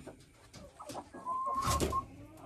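Domestic hens clucking, with one hen's held call in the second half, over a brief bump.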